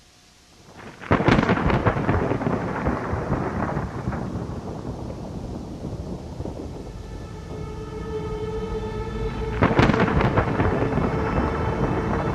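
Two thunderclaps. The first breaks suddenly about a second in and rolls away over several seconds; the second cracks near the end. A held low drone note comes in underneath shortly before the second clap.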